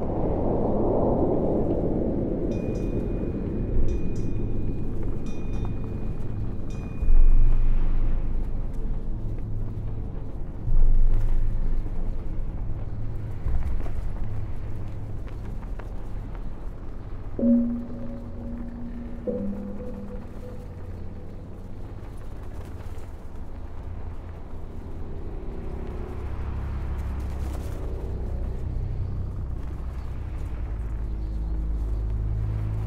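Dark ambient drone music: a deep, rumbling low drone with a swell near the start that fades away. A faint high pulsing tone plays in the first few seconds, and two short falling tones sound around the middle.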